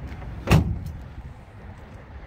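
A pickup truck's tailgate slammed shut: a single sharp bang about half a second in.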